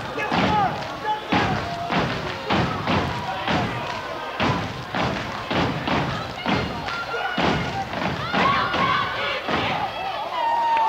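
A step team stepping in unison: feet stomping on the floor and hands clapping in a steady rhythm of about two beats a second, with voices shouting over the beat.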